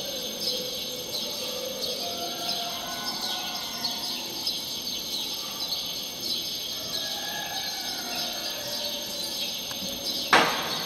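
Experimental organ-and-electronics soundscape: a dense, steady high chirping shimmer over faint tones that drift slowly in pitch.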